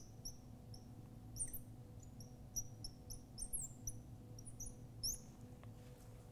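Marker squeaking on a glass lightboard while writing: a dozen or so short, high chirps at irregular intervals, each one a pen stroke. A faint steady hum lies underneath.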